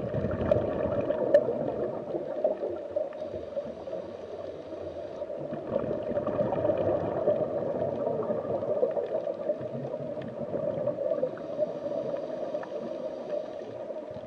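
Underwater ambience sound effect: a steady, muffled wash of moving water.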